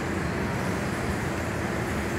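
Steady low rumble and hiss of background noise in a large hall, with no sudden sounds.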